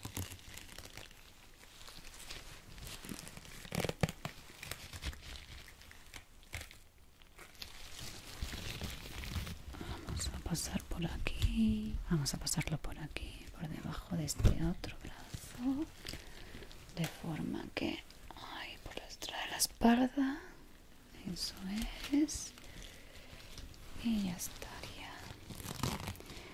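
An elastic bandage being handled and wrapped close to the microphone: fabric rustling, crinkling and rasping, with scattered sharp clicks and soft whispers.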